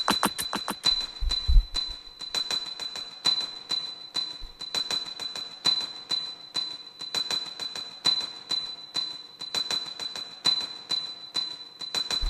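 Beatbox loop-station performance playing back: a repeating pattern of short, crisp hi-hat-like clicks over a steady high tone. A heavy kick thumps about a second and a half in, then drops out, leaving only the light percussion and the tone.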